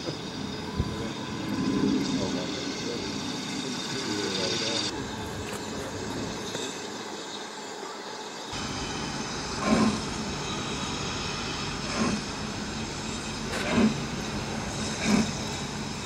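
BR Standard Class 9F 2-10-0 steam locomotive No. 92212 working slowly, with heavy exhaust beats about one to two seconds apart over a steady hiss of steam. Voices can be heard in the first few seconds.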